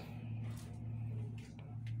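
Low, steady hum of running machinery in a fishing vessel's engine room.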